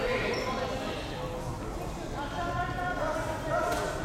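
Background voices talking and calling out across a large sports hall, with a few soft thuds.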